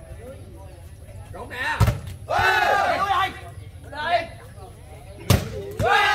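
A volleyball hit twice by hand during a rally, two sharp smacks about three and a half seconds apart. Voices shout between and after the hits.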